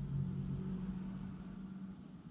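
A car driving past, its low engine hum loudest at the start and fading as it moves away.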